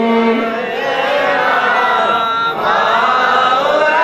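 A man's voice chanting melodically into a microphone, holding long notes that bend and slide in pitch, with a new phrase beginning about two and a half seconds in.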